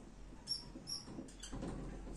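Marker squeaking on a whiteboard as a stroke is written: two short high squeaks about half a second and a second in, then faint scratching of the tip on the board.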